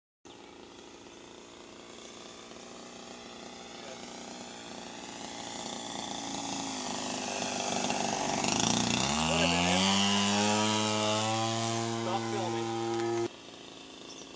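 RC Pitts model biplane's engine getting louder as the plane comes in low over the runway. About nine seconds in it rises sharply in pitch as the throttle is opened to abort the landing and climb away, holds high and steady, then cuts off suddenly about a second before the end.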